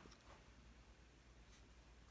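Near silence: quiet room tone with a few faint, light ticks.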